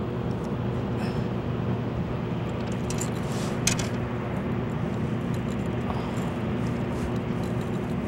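Steady low rumble and hiss of outdoor background noise with a faint steady hum, broken by a few light clicks, the sharpest about three and a half seconds in.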